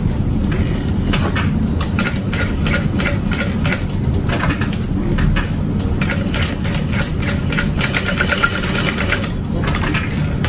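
Juki DU-1181N industrial walking-foot sewing machine stitching, each needle stroke a quick tick in a steady run, over a steady low hum.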